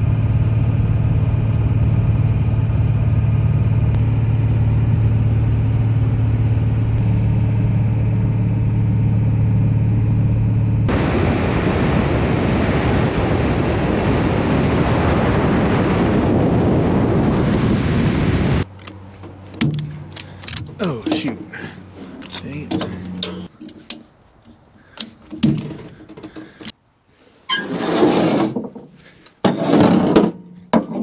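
A Ford pickup's diesel engine cruising at about 2,000 rpm, heard from inside the cab as a steady drone. About eleven seconds in it gives way to a loud rush of wind and road noise on the moving truck's roof. From about eighteen seconds on it is much quieter, with scattered clanks and knocks of straps and hardware being worked at the trailer.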